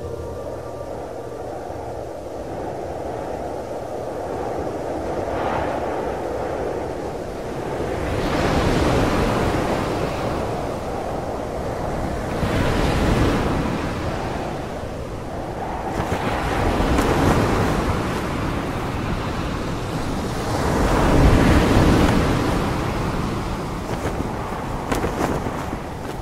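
Sea surf breaking on a beach: a steady wash of noise that swells with each incoming wave, about every four seconds.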